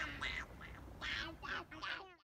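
A young child giggling in a run of short, high-pitched bursts, about six in two seconds.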